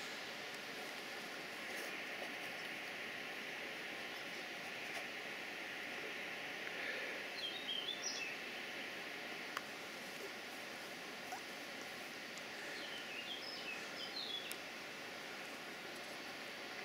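Steady outdoor background hiss, with a bird twittering briefly twice: about halfway through and again near the end.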